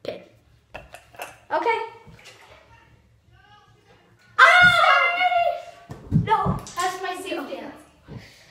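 Girls' voices: a few short exclamations, then a loud, excited shout with a long high held note about four and a half seconds in, followed by more shouting. A few low thumps sound under the shouting.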